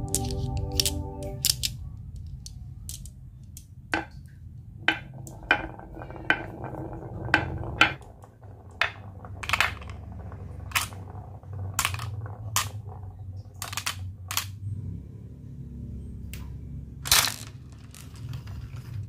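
Glass marbles clicking and clacking against each other, wood and hard plastic: sharp single clicks about a second apart, over a low steady hum.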